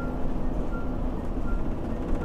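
Steady low rumble of a diesel pusher motorhome heard from inside its cab while cruising at highway speed: road noise mixed with the rear-mounted Cummins diesel.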